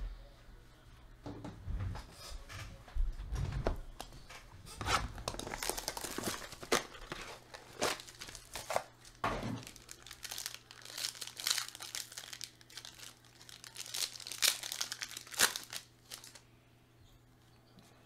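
Foil wrapper of a trading-card pack crinkling and tearing as it is opened by hand, in irregular crackling bursts.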